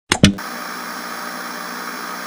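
Two sharp clicks in quick succession, then a steady hiss of TV-style static.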